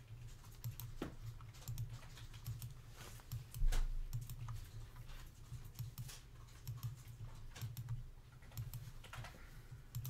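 Computer mouse clicking many times at an irregular pace, short sharp clicks over a steady low hum, with one duller low thump a little under four seconds in.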